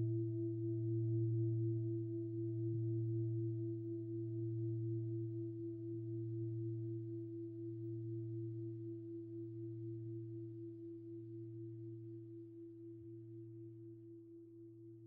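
A singing bowl ringing out: a low hum and a clear higher tone held together with a slight regular wobble, slowly fading.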